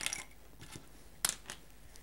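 Light clicks and taps of plastic and metal technical pen barrels being picked up and set down on a table: a few small clicks at the start, a sharper one just past a second in and a fainter one soon after.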